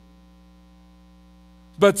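Steady electrical mains hum of several constant tones, low in level, in a gap in the speech; a man's voice comes in near the end.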